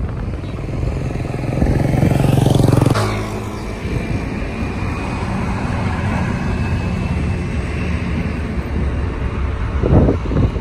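Engine of a moving road vehicle accelerating, its pitch and loudness rising for about three seconds until a sudden break like a gear change, then running steadily with road and wind noise.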